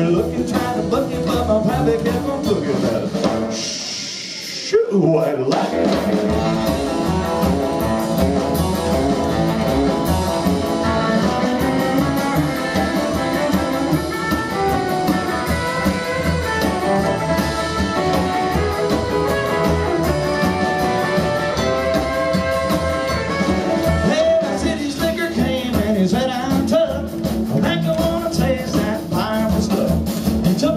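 Live rockabilly band playing an instrumental passage: hollow-body electric guitar over upright double bass and drums. The band drops out briefly about four seconds in, then comes back in.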